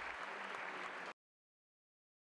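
Audience applauding; it cuts off suddenly about a second in.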